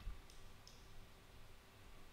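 Near silence, with a few faint computer mouse clicks in the first second.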